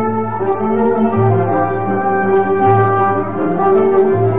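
Instrumental passage of a Turkish classical song in makam Muhayyer: an ensemble plays a melody in long held notes over a low bass note that returns about every second and a half.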